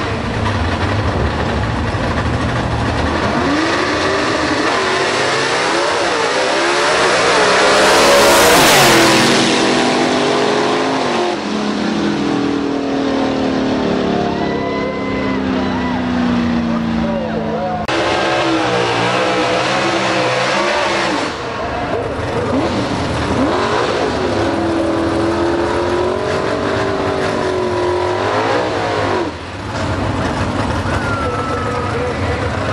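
Two drag-race gasser cars launching side by side at full throttle, engines revving up through the gears and loudest about a third of the way in, then fading as they run down the track. After a sudden cut, another gasser's engine runs and revs, rising and falling as it rolls up to the line.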